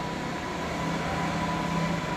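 Steady mechanical background hum with faint steady tones, no distinct events.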